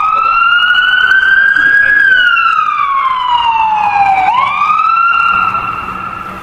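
Emergency vehicle siren wailing, its pitch sweeping slowly up and down, each rise or fall lasting about two seconds. It begins to fade near the end.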